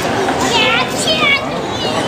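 Children's high-pitched voices calling out over the steady murmur of a crowd in a large hall, with several short rising and falling calls through the middle.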